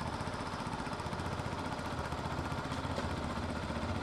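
A small engine running steadily, with a rapid, even pulsing beat.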